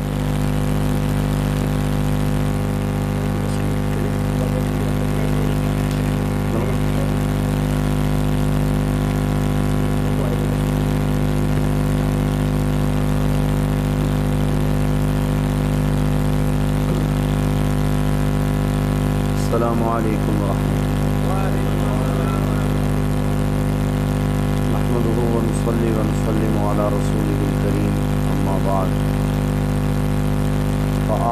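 A steady, loud, low droning hum, even and unbroken. Faint voices come and go in the second half.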